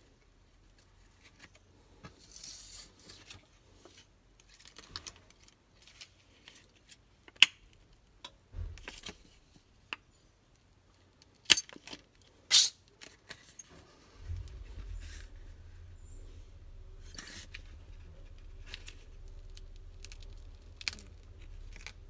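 Plastic back cover of a Samsung Galaxy A20 being pried off its frame: scattered clicks and a few sharp snaps as the clips let go, the loudest snaps about a third and halfway in. A low steady hum sets in about two-thirds of the way through.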